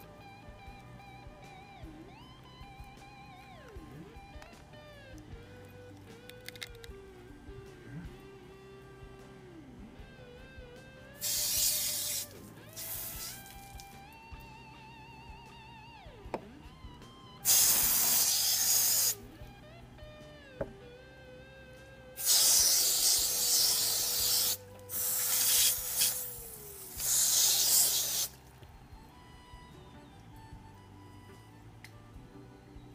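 Background music with guitar and a wavering melody, broken several times in the second half by loud hissing bursts of one to two seconds each.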